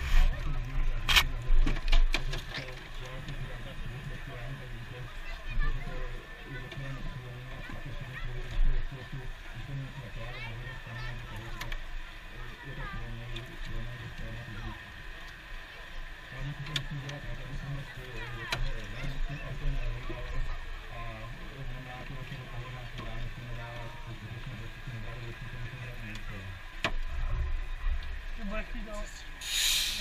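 A low machine hum that comes and goes in stretches of a few seconds, under scattered clicks and knocks of metal being handled on a car body, with muffled voices.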